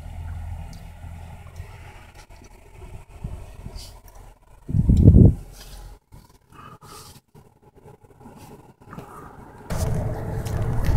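A car driving, with low rumbling road noise and a loud low rumbling burst about five seconds in. Rushing wind noise on the microphone swells just before the end.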